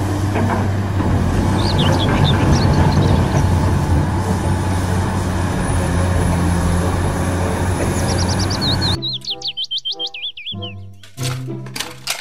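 Caterpillar 345C hydraulic excavator's diesel engine working under load, a loud, steady low drone with dense rumbling noise. About nine seconds in it cuts off suddenly to cheerful background music with whistling, wavering glides.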